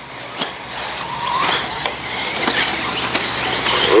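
1/8-scale electric RC buggies racing on a dirt track: brushless motors whining with pitch glides as they accelerate and brake, over tyre and gravel noise, louder in the second half.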